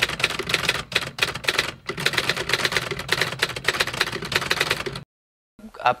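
Typewriter sound effect: a rapid, continuous clatter of keystrokes that cuts off abruptly about five seconds in.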